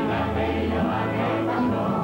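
Music: a mixed group of men and women singing a song together.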